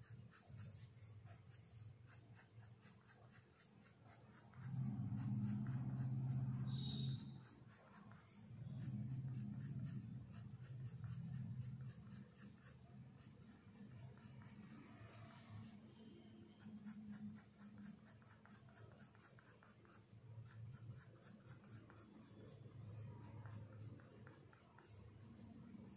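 Blue coloured pencil shading on paper over a clipboard in quick short strokes, a soft fast scratching. A low hum swells over it twice, about five seconds in and again about nine seconds in.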